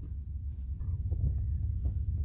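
Wind buffeting the microphone: a steady low rumble with a few faint knocks.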